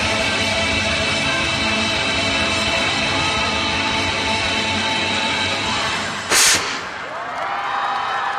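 Stage music playing with long held chords, then a short loud blast about six seconds in. After it the music drops away and the crowd cheers.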